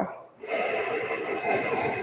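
A person's long, slow exhale, a steady breathy hiss that starts about half a second in and carries on, paced to a four-count breathing exercise.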